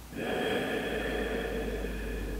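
A woman's long, audible sigh: one slow, deep breath out, a deliberate yoga breath taken while holding a seated twist. It starts just after the beginning and fades about two seconds later.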